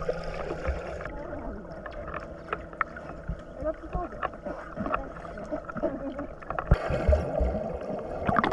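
Swimming-pool water heard through a submerged camera: muffled bubbling and gurgling with small knocks. Louder bubble bursts and splashing come near the end as a swimmer kicks past.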